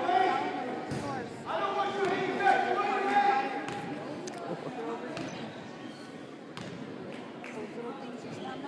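Basketball bounced several times on a hardwood gym floor by a player at the free-throw line, each bounce a sharp knock that echoes in the gym, mostly in the second half. Voices from the gym are heard in the first few seconds.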